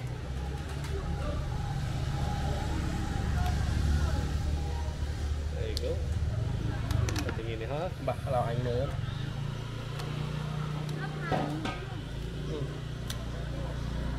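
A roasted chicken being cut up on a wire rack, giving a few sharp clicks, over a steady low rumble and background voices at an outdoor food stall.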